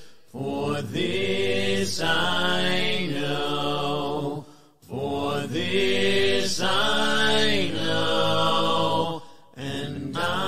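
Unaccompanied hymn singing, a cappella, in long sung phrases with short breaks between them: one just after the start, one just before the middle and one near the end.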